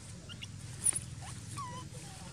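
Infant macaque whimpering: about five short, high squeaks that slide up and down in pitch, with a sharp click about a second in.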